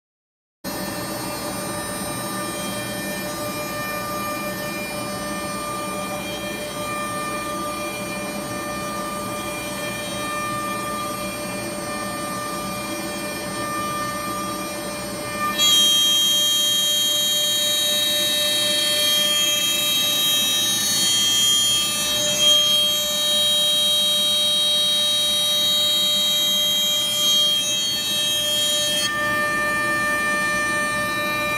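CNC router spindle running with a steady high whine while its half-inch bullnose bit mills the D-tube channel into a wooden guitar neck blank. About halfway through the cutting gets louder, with a sharper high whine.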